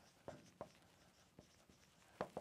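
Faint strokes of a dry-erase marker writing on a whiteboard, a few short scratches against near silence.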